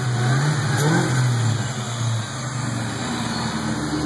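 A 2004 SVT Cobra's Whipple-supercharged 4.6-litre DOHC V8 running, with two short rises in revs in the first second or so before it settles back to a steady idle.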